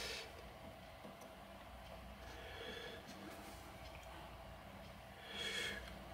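Quiet room tone with a faint low hum, and a short breath through the nose near the end.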